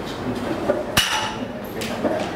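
A single sharp knock with a short ringing, clinking tail about halfway through, as of a hard object struck or set down on a hard surface, then a fainter click near the end, over low room murmur.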